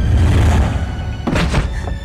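Foley fight sound effects over dramatic film music: a heavy thud as a thrown body hits the floor, then a second, sharper impact about one and a half seconds in.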